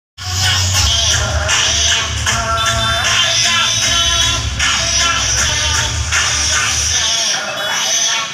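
Loud music with heavy bass played through a large outdoor DJ sound system; the bass drops out for a moment near the end.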